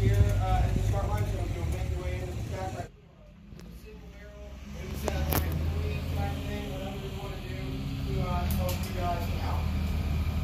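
Indistinct talking from several people over a steady low rumble. About three seconds in, the sound cuts away and drops quieter, then voices and the low rumble come back.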